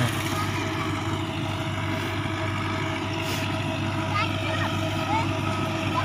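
Steady engine drone with a low hum and faint constant tones above it, unchanging throughout; a few short high chirps come through about two-thirds of the way in.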